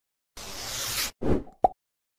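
Logo-animation sound effects: a whoosh that swells for most of a second, then a short low thud, then a quick pop.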